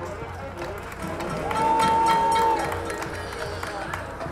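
High school marching band and front ensemble playing a field show, with a single high note held for about a second near the middle as the loudest moment, over steady percussion strokes.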